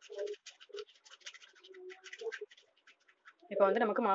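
A tiny utensil stirring batter in a miniature steel bowl, scraping and clicking against the metal in quick strokes, several a second. The stirring stops after about three seconds, and a voice starts talking near the end.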